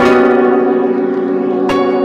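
Bells ringing in an end-credits music track, many struck tones overlapping and ringing on. One new strike lands right at the start and another a little before the end.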